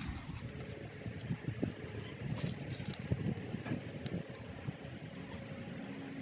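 Faint, irregular clicks and knocks of white PVC pipe fittings being picked up, turned and set down with gloved hands, mostly in the first four seconds or so.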